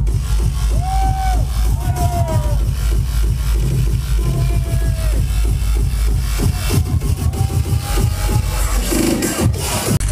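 Industrial hardcore DJ set played loud over a club sound system, heard from within the crowd: heavy bass and a fast, dense kick-drum beat, with short held synth tones over it.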